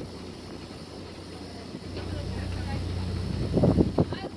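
Low, steady hum of a riverboat's engine heard from on board, growing louder about halfway through, with wind buffeting the microphone in a gust near the end.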